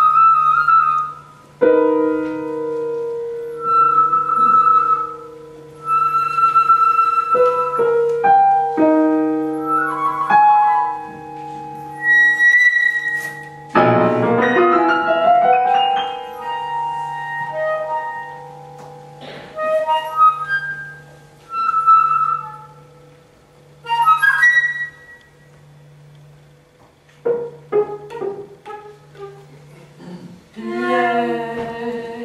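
Live contemporary chamber music: a flute playing long held, slightly wavering notes over sparse, ringing piano chords, with one loud dense piano chord about halfway through.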